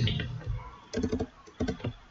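Computer keyboard keystrokes as text is deleted and retyped: two quick runs of several key presses, about a second in and again near the end.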